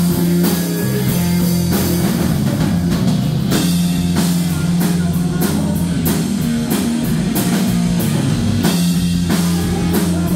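Live rock band playing an instrumental passage: distorted electric guitar through a Marshall amp, electric bass and a drum kit with repeated cymbal crashes.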